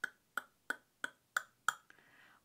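A run of six light clicks at the lips, evenly spaced at about three a second, made while thinking.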